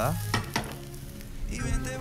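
Sliced onion and chile sizzling as they fry in oil in a skillet, with a couple of sharp clicks about half a second in.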